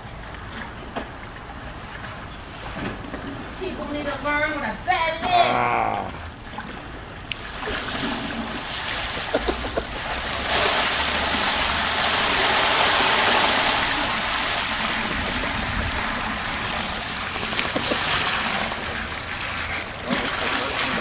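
Water rushing and splashing as it pours out of a waterbed mattress onto pavement. The rush builds about seven seconds in and is loudest around the middle. Before it, a high voice rises and falls for a few seconds.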